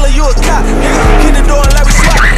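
Hip hop music with a steady beat, over which a V8 muscle car's engine revs up, its pitch rising for about a second.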